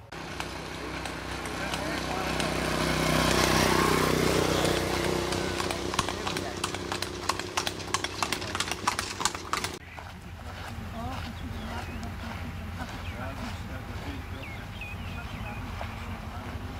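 Horse-drawn cart passing on a paved road: a rising rumble as it nears, then a quick run of hoof clip-clops. About ten seconds in it cuts off suddenly to a quieter outdoor background.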